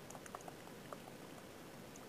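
Faint, sparse ticks and light scratches of a stylus on a tablet screen during handwriting, over low room noise.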